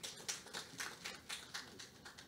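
Faint, sparse hand-clapping from a small audience, about four claps a second, thinning out near the end.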